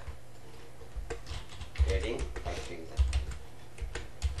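Computer keyboard typing: irregular key clicks while CSS is being entered, with a brief spell of low voice about two seconds in.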